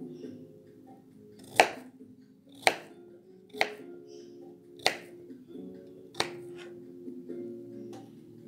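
Five sharp knife chops through carrot onto a plastic cutting board, roughly a second apart, over background music.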